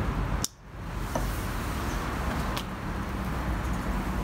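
A sharp click of a small inline cord switch being pressed about half a second in, turning on a PTC heating element, over a steady low background rumble; a fainter click follows a couple of seconds later.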